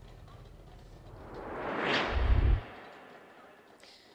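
Broadcast transition sound effect: a whoosh that swells for about two seconds and ends in a short deep bass hit, then fades away.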